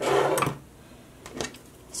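Handling noise as a lighter is picked up: a short rustling scrape, then a single sharp click about a second and a half in.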